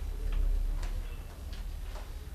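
Pages of a thick book being leafed through by hand, giving a few faint clicks over a low steady hum.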